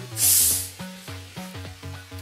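Carbonated gas hissing out as the cap of a half-litre plastic Pepsi bottle is twisted open: a short sharp hiss starting just after the start, lasting about half a second. Background music plays throughout.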